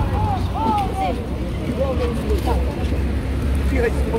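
Market chatter: nearby voices talking, not directed at the camera, over a steady low rumble.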